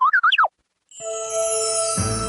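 A show-to-commercial transition: a quick run of pitched swoops gliding up and down for about half a second, a brief dead silence, then a held musical chord that opens with a high falling sweep about a second in.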